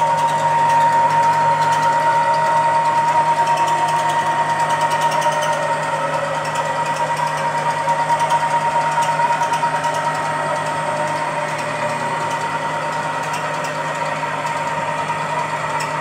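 Stepper motors driving a CNC router's axes along ball screws at a steady traverse speed, giving a continuous high whine over a low hum.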